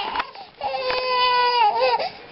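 A five-month-old baby crying: a short falling cry at the start, then one long wail of about a second that wavers and drops in pitch near the end.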